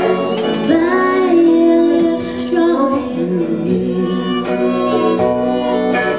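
A slow country duet played live by a small band, with a woman's voice singing long held, sliding notes over electric guitars and drums.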